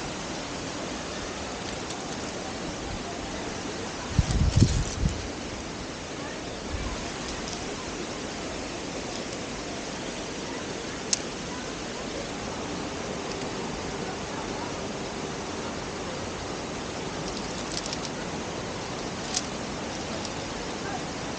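Steady rushing of a mountain waterfall. About four seconds in there is a short low rumble of buffeting on the microphone, and a few sharp clicks come later.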